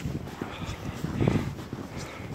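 Footsteps crunching unevenly through deep snow, with wind rumbling on the microphone; the loudest stretch comes a little over a second in.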